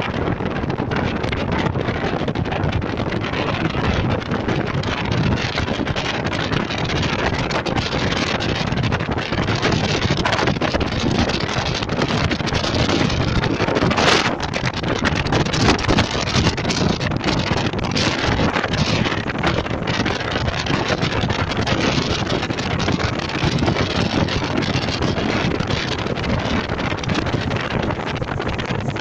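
Wind buffeting the microphone over the steady running noise of a moving car, tyres and engine blended into one rush. About halfway through there is a brief louder whoosh as an oncoming van passes close by.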